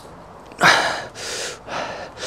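A man breathing out hard twice as he sinks into a deep split-squat stretch. The first breath is the louder one, about half a second in, and a softer one follows.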